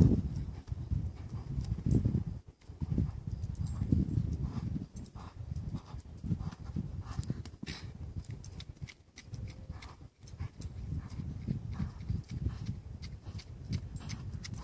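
A chestnut colt's hooves thudding in deep arena sand as it lopes in circles on a lunge line: an uneven run of dull, low beats.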